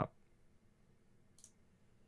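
Near silence broken by a single faint click about a second and a half in: a computer mouse button being clicked.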